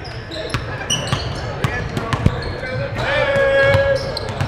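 Basketball practice on a hardwood gym floor: a basketball bouncing, short high sneaker squeaks and players calling out. A longer shout comes about three seconds in.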